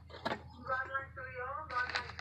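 A person's voice, with a couple of sharp clicks just before it from the metal valve spring tester being handled.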